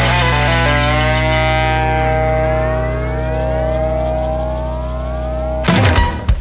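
A country-rock band holds the song's closing chord while rising pitch glides build over it. It ends on a sudden full-band hit with drums and cymbals about five and a half seconds in, which rings out and decays.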